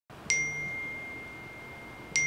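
A smartphone notification chime: one bright ding about a third of a second in, its clear tone ringing on and slowly dying away over a faint hiss.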